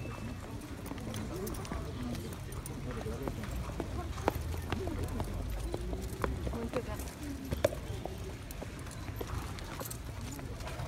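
Horses' hooves clip-clopping at a walk, with people talking at the same time; two sharper knocks stand out, at about four and about seven and a half seconds.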